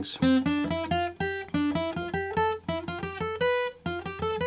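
Gibson J-45 acoustic guitar playing a scale on two strings, single notes picked one at a time at about three to four a second. The run steps up the neck and back down in waves, folding back on itself.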